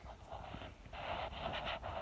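A person breathing close to the microphone: two breaths, a short one and then a longer one.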